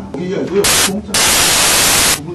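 Loud hissing static cuts in abruptly over a man's speech, briefly about half a second in and again from just past one second on, each burst switching on and off sharply. The static is a fault in the recording's audio.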